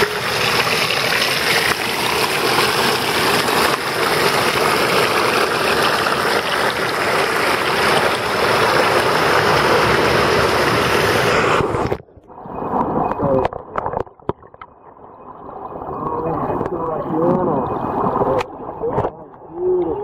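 Creek water rushing and splashing over a camera held at the surface of a mountain stream, loud and steady for about twelve seconds. It then cuts off suddenly as the camera goes under, leaving a much quieter, muffled underwater sound.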